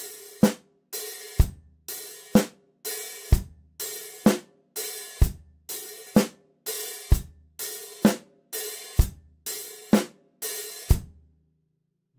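Drum kit played slowly: an eighth-note hi-hat pattern alternating closed and open, about two strokes a second, with bass drum and snare on the beats. Each open hi-hat hit rings on briefly before the next closed stroke chokes it. The playing stops near the end.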